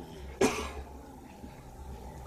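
A man coughs once, short and sharp, about half a second in, over a faint steady low hum.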